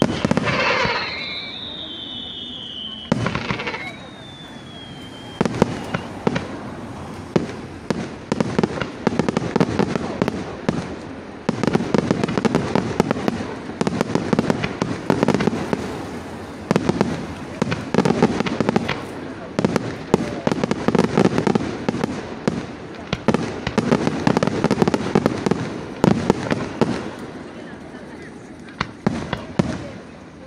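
Aerial fireworks display: two whistling shells fall in pitch in the first few seconds, then a long, dense barrage of crackling and rapid bangs follows and thins out near the end.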